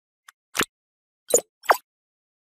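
Intro sound effects for an animated title logo: a faint click, then three short, separate hits, the last one a brief upward sweep in pitch, with dead silence between them.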